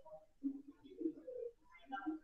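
A bird cooing faintly in a few short, low phrases.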